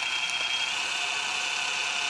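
Gammill Statler computer-guided longarm quilting machine stitching a quilt border: a steady, unbroken whir of the motor and needle.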